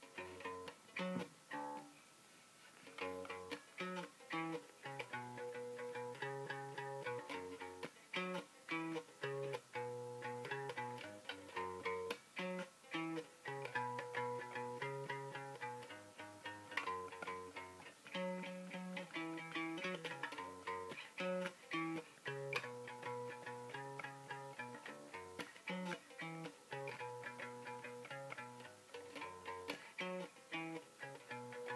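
Fender Precision bass guitar played solo, a riff of plucked notes that repeats over and over.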